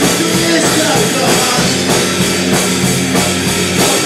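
Punk rock band playing live: distorted electric guitars, bass guitar and drum kit in a steady, driving beat, with no vocals.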